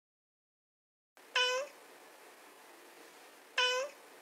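A domestic tabby cat meowing twice, two short meows about two seconds apart, each ending with a slight rise in pitch, over faint background hiss.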